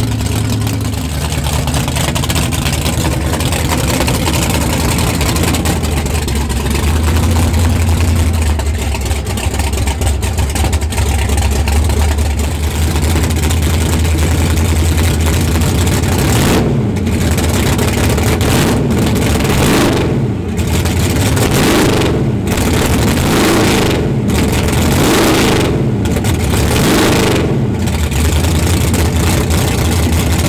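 Fox-body Ford Mustang drag car's engine running at a low, steady idle. From a little past halfway it is revved up and down about six or seven times, roughly every two seconds.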